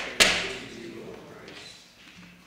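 Handling noise at the lectern: a sharp knock, then a rustle of paper that fades over about a second and a half as a sheet is picked up.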